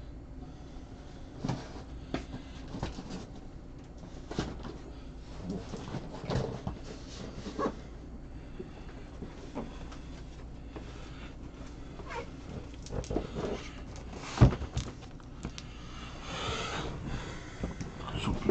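Scattered knocks, bumps and rustling from someone moving about and fetching a box off camera, with one sharp, loud knock about fourteen and a half seconds in and a burst of rustling near the end.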